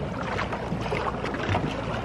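Steady wind and water noise heard from on board a small boat out on the sea.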